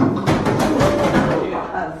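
A burst of theatrical magic sound effect in a wand-shop show: rapid rattling and clattering answering a spell cast with a trial wand, with voices mixed in. It fades toward the end.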